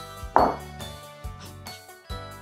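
Background music, with a single metallic clink about half a second in as a stainless steel pot is knocked against another pot and set down on the counter, ringing briefly.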